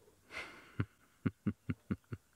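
A short breath close to the microphone, then a run of six short, sharp knocks about a quarter of a second apart: handling noise as a handheld digital microscope is brought up against a grasshopper perched on a finger.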